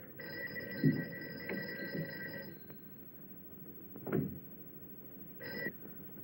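Old bell telephone ringing: one ring of about two seconds, then a short burst of a second ring near the end.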